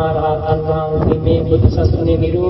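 Buddhist chanting: a voice holding long, steady notes.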